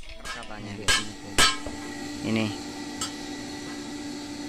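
Two sharp metal clanks about half a second apart, with a fainter clink about three seconds in: pieces of steel knocked together among the tools and scrap of a blacksmith's workshop.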